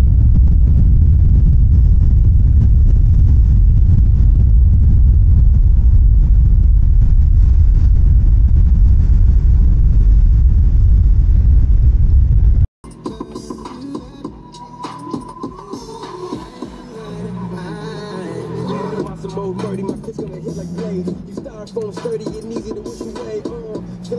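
Strong wind blowing loudly on the microphone, with rough sea waves breaking on a shingle beach under it. About halfway through it cuts off suddenly and background music takes over.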